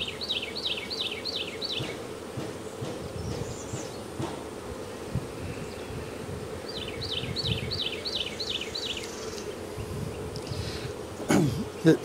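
Honeybees humming steadily around an open hive. A bird sings a run of about seven quick falling notes near the start and again about two-thirds of the way in.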